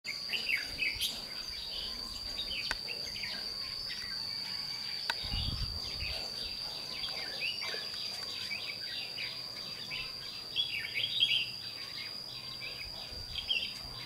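Red-whiskered bulbuls calling in short chirpy phrases, over a steady high-pitched insect drone.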